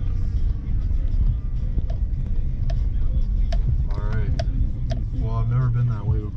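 Cammed 2006 GMC pickup's engine running with a steady low rumble, heard from inside the cab as the truck drives off.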